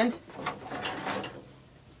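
A flat woven bamboo tray being picked up and handled: a faint, brief handling noise that fades out about one and a half seconds in.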